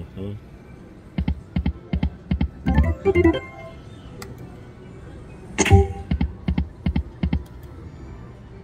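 Cash Crop video slot machine running spins: a rapid ticking of the reels, about four ticks a second, with a short chime jingle about three seconds in as a small win lands, and a sharp ringing hit as a new spin starts near the end.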